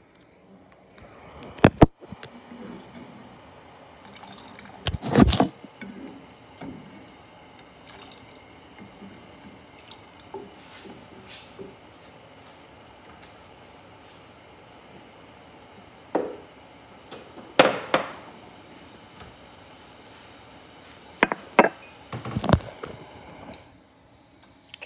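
A kettle of water heating with a faint steady sizzle, broken by several loud knocks and bumps from things being handled.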